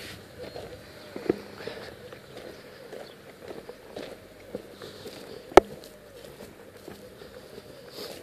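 Footsteps on dry grass and dirt, a soft uneven crunching, with one loud sharp click a little past halfway through.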